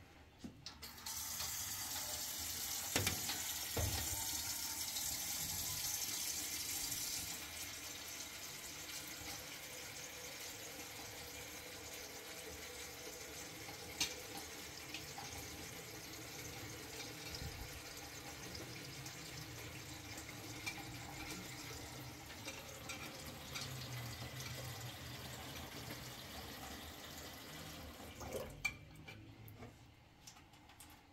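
A kitchen tap runs into a large aluminium cooking pot as it is rinsed and washed in a steel sink. The water starts about a second in and is loudest for the first several seconds, then runs on more softly. The pot gives a few clinks against the sink.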